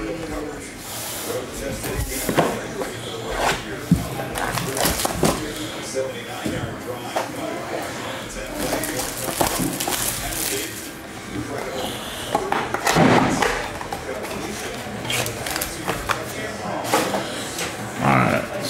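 Cellophane shrink wrap crinkling and tearing as a cardboard trading-card box is unwrapped, with the boxes knocking and clicking as they are handled and set down.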